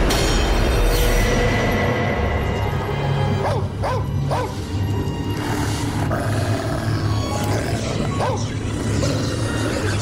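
Horror film score: a sustained low drone that opens with a sudden hit, with several short swooping, growl-like sounds laid over it about midway and again near the end.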